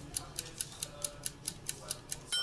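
Steady clock-like ticking, about four to five sharp ticks a second: an edited-in ticking sound effect laid under a pause.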